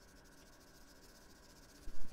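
Felt-tip marker scribbling on paper in quick back-and-forth strokes, faint.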